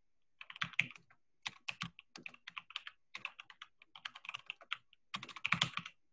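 Typing on a computer keyboard: a quick run of keystrokes starting about half a second in, with a dense flurry near the end.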